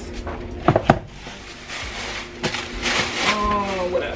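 Groceries being handled on pantry shelves: two sharp knocks a little under a second in, another knock later, and rustling of packages in between.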